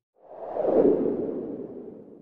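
A single whoosh transition sound effect: a fairly low-pitched airy swell that builds quickly, peaks just under a second in, and fades away slowly.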